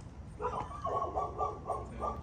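A dog whining in a quick run of high, wavering whimpers, about six pulses a second, starting about half a second in.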